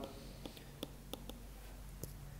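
Faint, scattered taps of a stylus on a tablet's glass screen while handwriting, over low background hiss and hum.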